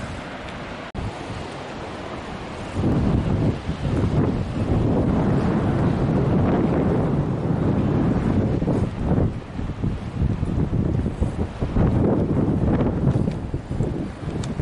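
Wind buffeting the microphone in gusts, much stronger from about three seconds in, over the wash of waves breaking in a harbour.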